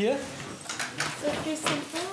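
Light clattering and rattling of equipment being handled in an open paramedic's emergency backpack, a handful of short clicks.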